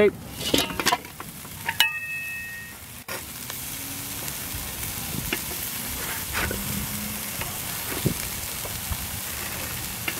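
Burger patties sizzling steadily on the grate of a Weber Smokey Joe charcoal grill once the lid is off. About two seconds in, the metal lid clanks and rings briefly as it is lifted away.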